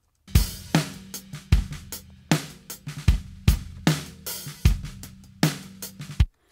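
Playback of a multitracked acoustic drum kit mix: kick drum and snare alternating in a slow, steady beat with hi-hat and cymbals. The mix is lightly processed, with saturation, gentle gating, EQ and only a little compression. It starts just after the opening and stops suddenly right after the end.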